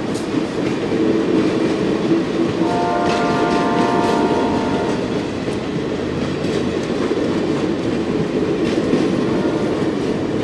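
Passenger train cars rolling past with a steady rumble and wheel clatter on the rails. About three seconds in, the horn of the locomotive up ahead sounds once for about two seconds.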